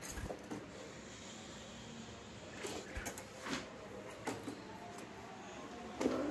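A caged Chinese hwamei fluttering up inside its wire cage, with a sharp brush of wings and cage right at the start. This is followed by a few faint taps and rustles as it moves about on the perch and bars.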